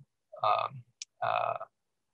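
A man's voice making two drawn-out, hesitant "uh" sounds at a flat pitch, with a brief hiss between them.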